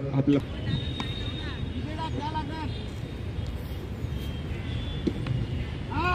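Open-air ambience at a cricket ground: a steady background noise with faint distant voices calling out, one call a little over two seconds in, and a couple of faint clicks.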